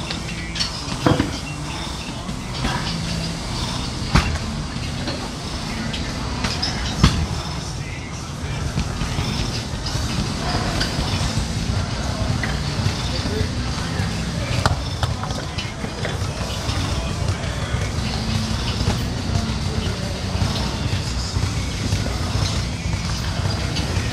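Gym ambience: a steady low hum with indistinct background voices, broken by a few sharp clanks of metal weights, the loudest about seven seconds in.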